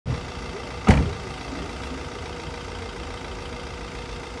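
A car door shut once about a second in, a single sharp bang, over steady low street traffic noise.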